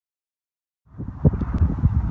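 Silence, then about a second in, wind starts buffeting the microphone: a low, uneven rumble with irregular gusts.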